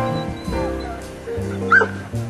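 A greyhound gives one short, high yelp near the end, over background music.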